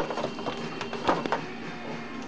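Upright piano keys pressed by a child: a note struck at the start and another about a second in, each left ringing.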